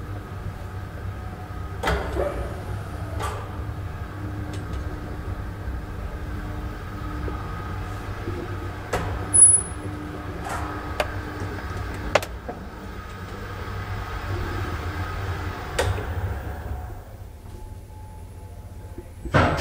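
Traction elevator car travelling in its shaft: a steady low rumble and hum of the running car, broken by sharp clicks every few seconds and a brief high squeak about halfway. The running noise dies away near the end as the car slows to a stop at a landing.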